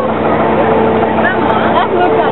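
Mine-train roller coaster cars running along the track, a loud steady rumble with a hum, with riders' voices calling out over it.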